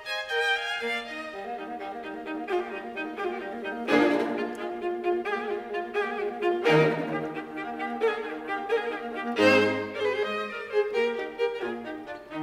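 String quintet of two violins, two violas and cello playing a fast classical movement. The whole ensemble strikes loud accented chords about four seconds in, again near seven seconds and again near nine and a half seconds, with the cello entering low under the later two.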